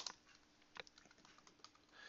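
Faint keystrokes on a computer keyboard: a few scattered taps as text is typed.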